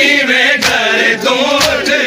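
Men chanting a noha together, with open-handed chest-beating (matam) landing on the beat about once a second, twice here.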